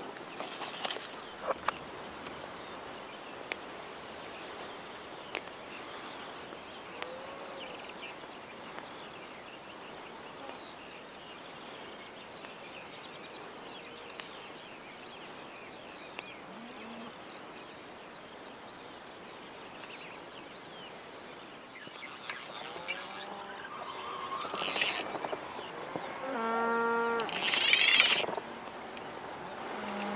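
Quiet lakeside ambience with a few faint distant calls. In the last eight seconds a trout takes the slowly trolled fly and the fly reel's drag gives several short, loud, high-pitched bursts as the fish pulls line, with a brief held tone among them.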